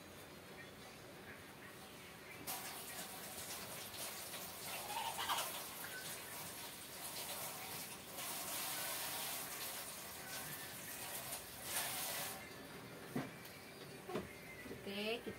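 Kitchen tap running into a sink while Chinese eggplants are rinsed under it. The water starts about two and a half seconds in and stops about two seconds before the end.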